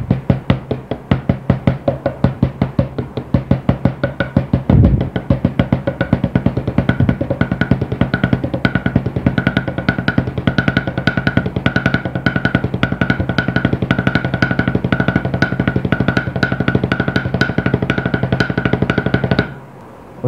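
Drumsticks playing double paradiddles (R L R L R R, L R L R L L) on a practice pad and drum kit: an even stream of stick strokes, moderate at first and much faster after about five seconds, with one heavier low thump around then. The strokes stop shortly before the end.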